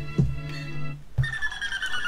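A sampled hip-hop beat plays from an AKAI MPC1000, with a held bass note underneath. About a second in it breaks off. A click follows, then a high ringing tone that slowly falls in pitch.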